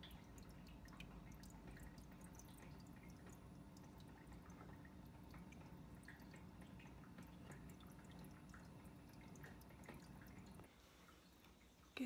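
Faint aquarium filter running: water trickling and dripping back into the tank with small irregular ticks over a low steady hum. It drops away shortly before the end.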